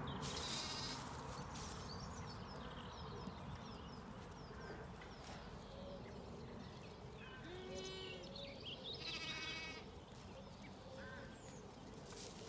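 Zwartbles sheep and lambs bleating faintly, a few short calls about two-thirds of the way through, over a quiet outdoor background.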